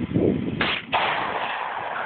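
A 12-gauge shotgun fired once, a sharp blast about halfway through followed by a long fading tail.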